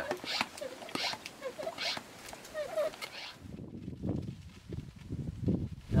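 Hand-pump garden sprayer being pumped up to pressure: a short squeaky stroke roughly every half second to second. About three seconds in it gives way to a low rumbling noise.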